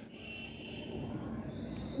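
Pencil lead faintly scratching on sketch paper as one long curved stroke is drawn.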